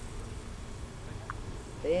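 A steady low rumble with no distinct event, then a man calling out briefly near the end.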